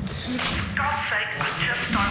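A quick swish about half a second in, followed by a man's agitated, strained muttering.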